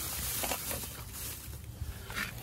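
Plastic shopping bag rustling and crinkling as a hand rummages through tools inside it.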